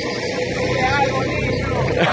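Small motorcycle engine running steadily with a low, even hum as it rides along the street.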